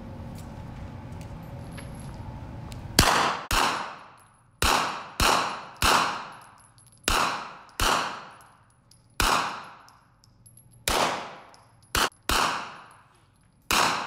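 Rifle fired one shot at a time on an indoor range: about a dozen sharp shots over ten seconds, starting about three seconds in, at uneven spacing of half a second to a second and a half. Each shot rings out in a long echo off the hall's walls.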